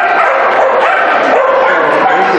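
A dog barking and yipping over and over, the calls coming in quick succession.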